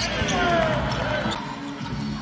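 Court sounds of a live basketball game: the ball bouncing on the hardwood floor, with voices in the gym.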